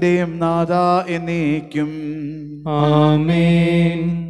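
A male priest chanting the liturgical prayers of the Holy Qurbana on a near-level reciting tone. He breaks briefly a little past halfway, then holds a long sustained phrase near the end.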